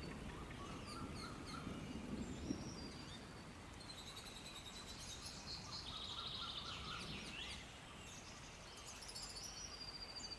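Faint songbird chirps and trills repeating over quiet background hiss, with a faint low rumble in the first few seconds.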